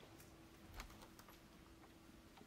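Near silence: faint room tone with a steady low hum and a few faint clicks, the most noticeable one just under a second in.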